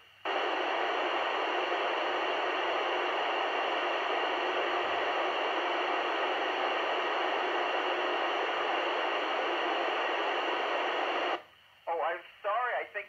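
Steady rushing hiss from a Yupiteru multi-band scanner's speaker tuned to the ISS downlink on 145.800 MHz FM, with no signal on the channel. It switches on abruptly just after the start and cuts off abruptly about a second before the end.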